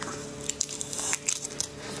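Wet, sticky squelching and crackling as gloved hands pull apart a piece of spicy sauced seafood. The sound comes as a few short, irregular clicks and tears.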